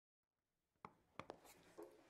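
Near silence, broken by three faint short clicks about a second in.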